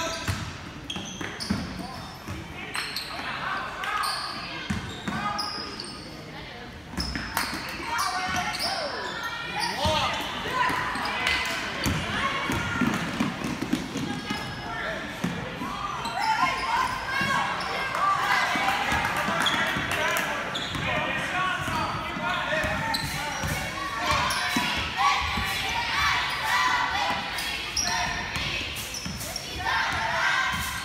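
A basketball bouncing repeatedly on a gym's hardwood floor during play, with voices of players and spectators calling out, all echoing in a large gymnasium.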